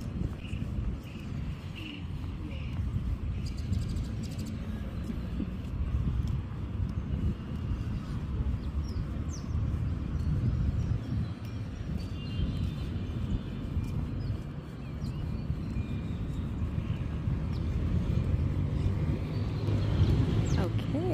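Open-air ambience dominated by a steady low rumble that rises and falls, with a few faint high chirps over it.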